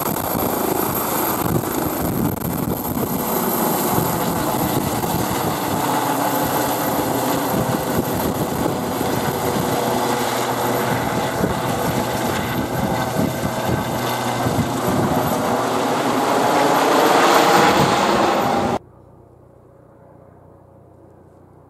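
A Eurocopter EC135 air-ambulance helicopter with a Fenestron tail rotor lifting off and climbing away: steady rotor and turbine noise, swelling to its loudest near the end, then cutting off suddenly.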